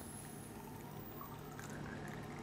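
Faint, steady trickle of liquid being poured from a small cup into the open plastic syringe barrel of a feeding tube.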